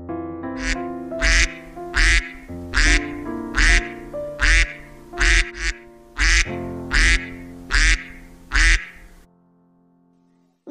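Duck quacking repeatedly, about a dozen loud quacks roughly every three-quarters of a second, over background music with sustained chords. Both stop shortly before the end.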